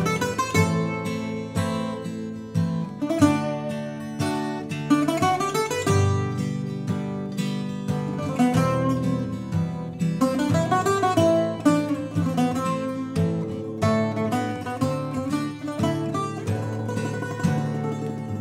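Greek bouzouki and acoustic guitar playing an instrumental introduction together.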